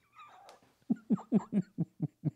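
A man laughing: a run of short "ha" bursts, about four a second, starting about a second in.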